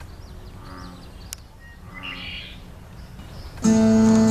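Faint bird chirps over a steady low outdoor background, with one sharp click about a second in. Near the end acoustic guitar music starts abruptly and much louder.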